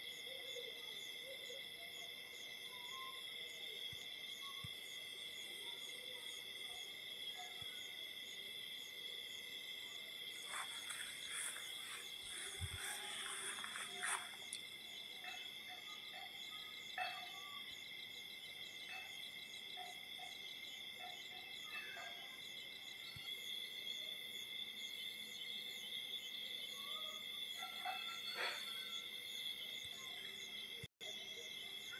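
Steady insect chorus: a continuous high, ringing drone held on a few fixed pitches. A cluster of short, sharp chirps comes about ten to fourteen seconds in, with a few more later on.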